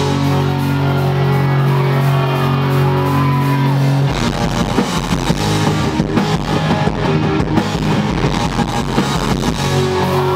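Pop-punk band playing live with distorted electric guitars: a chord rings out held for about four seconds, then the drums and bass come in with a driving beat.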